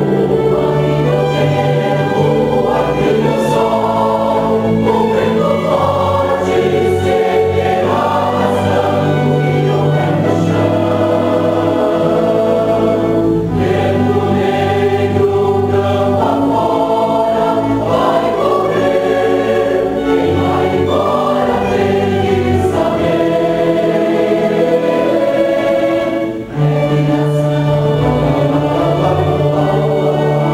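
Mixed choir singing sustained chordal phrases with a small string ensemble (violins, viola, cello, double bass) accompanying. There is a brief break between phrases near the end.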